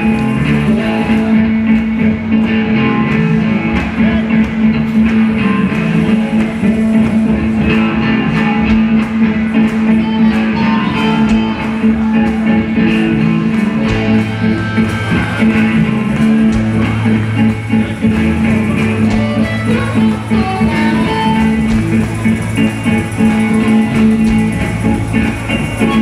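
Live blues band jamming: electric guitars over a drum kit, with a note held under the playing for most of the time. A low line of stepping notes joins about halfway through.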